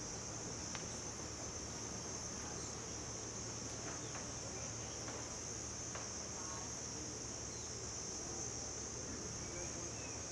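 A steady, high-pitched chorus of insects, held at one pitch throughout over a faint background hiss, with a few faint short chirps near the end.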